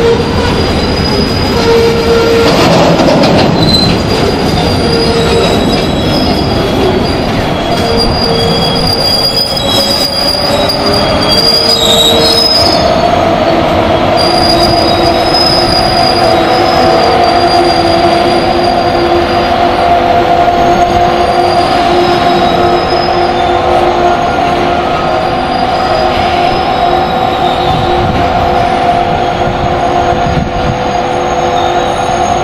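Open steel freight wagons rolling slowly past, their wheels rumbling on the rails and squealing. The squeal sounds at several pitches that come and go, and becomes a steadier squeal from about halfway through.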